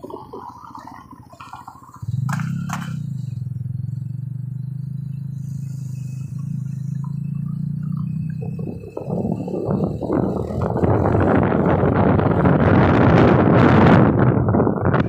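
A car engine's steady low drone that starts suddenly about two seconds in, followed from about nine seconds by rough, gusting wind rush on the microphone that grows louder toward the end.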